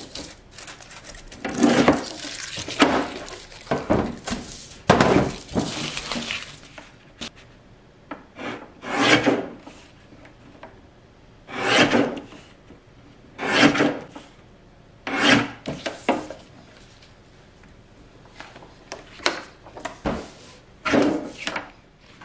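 X-Acto guillotine paper trimmer cutting, about a dozen separate short scraping strokes of the blade spaced one to three seconds apart. The first cuts go through folded aluminium foil to sharpen the blade; the later ones go through sheets of printed labels.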